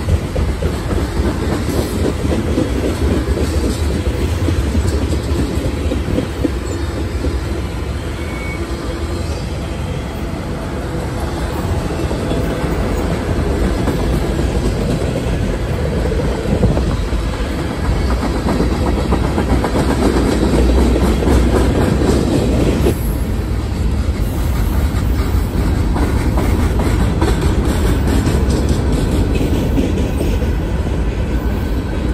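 Freight cars of a long mixed freight train rolling past close by: the steady running noise of steel wheels on the rails, with clickety-clack over the rail joints.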